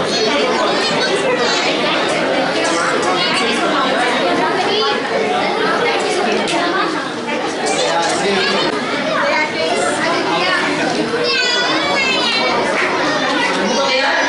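Crowd of small children and adults chattering at once, a steady babble of overlapping voices with high children's voices calling out above it, especially near the end.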